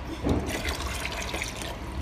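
Water pouring and splashing from a small plastic bucket onto a plastic toy ride-on car and its basin.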